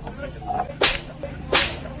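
Two sharp whip-like cracks, about two thirds of a second apart, over faint voices.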